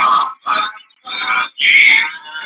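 A person's voice, garbled and choppy, in short phrases with a brief break about a second in.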